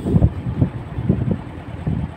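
Wind buffeting the phone's microphone in irregular gusts, a low rumbling noise.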